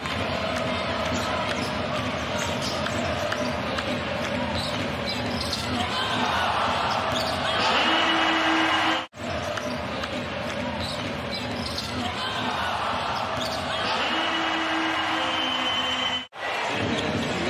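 Basketball game sound in an arena: a ball being dribbled and bounced on the hardwood over steady crowd noise and voices. The crowd gets louder around a shot at the basket, then the sound cuts off suddenly about nine seconds in and picks up again.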